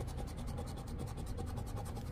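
A scratch-off lottery ticket being scraped with a hand-held scratcher as the coating comes off the winning-numbers area. It makes a quick run of light scraping strokes.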